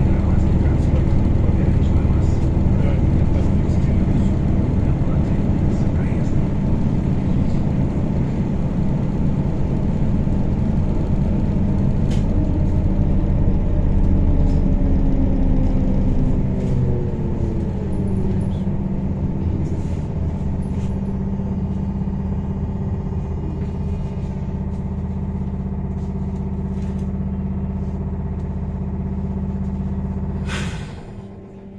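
Inside a MAZ-103T trolleybus under way: a steady low hum and road rumble. Midway through, a motor whine falls in pitch and the sound eases as the trolleybus slows.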